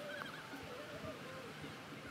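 Faint distant voices over a steady outdoor hiss, with a brief higher-pitched call just after the start.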